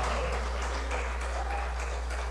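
Congregation applauding, scattered hand clapping that slowly dies away, over a steady low hum.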